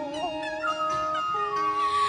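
Instrumental backing music for a chanted Vietnamese poem in a pause between sung lines: held notes that step to new pitches a few times.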